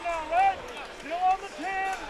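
Faint speech: a man's voice in a few short phrases, quieter than the commentary around it.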